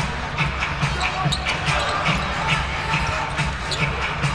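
A basketball dribbled in a steady rhythm on a hardwood arena floor, under the constant murmur of the arena crowd.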